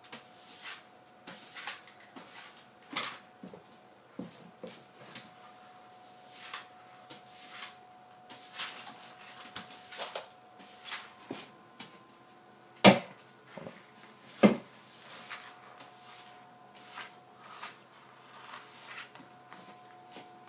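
Broom sweeping a wooden floor in short brushing strokes, one every half-second to a second. Two sharp knocks come near the middle, about a second and a half apart.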